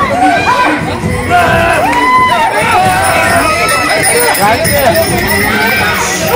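A crowd of onlookers shouting and cheering, many voices overlapping throughout.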